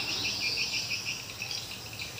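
Insects chirping in a fast even pulse, about seven chirps a second, that fades after about a second, over a steady high-pitched insect drone.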